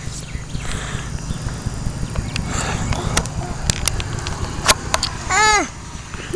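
Handling noise from a handheld camera being passed between hands: a low rumble of wind and rubbing on the microphone, with scattered clicks and knocks. About five seconds in, a brief high voice.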